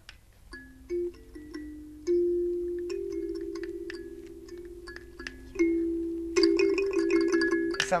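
Kalimba (thumb piano) with metal tines on a round gourd-like body, plucked one note at a time in a slow, halting low tune, each note left ringing, busier near the end. It sounds like a school announcement chime.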